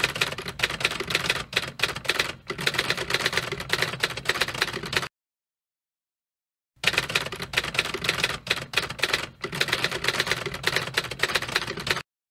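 Typing sound effect: rapid key clacks for about five seconds, a cut to total silence for about a second and a half, then rapid clacks again.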